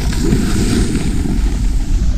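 Wind rumbling on an action camera's microphone during a fast snowboard run, with the hiss of a board sliding over packed snow.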